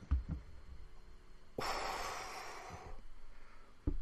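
A person sighs: one long breathy exhale, about a second and a half, starting near the middle. A short low thump comes just before the end.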